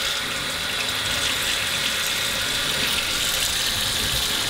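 Kitchen tap running steadily into a stainless steel sink, the stream splashing over a face and hand held under it to rinse out an eye.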